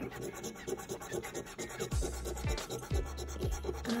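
A coin scratching the latex coating off a crossword scratch-off lottery ticket in quick repeated strokes. From about halfway through, background music with a deep bass beat plays under it.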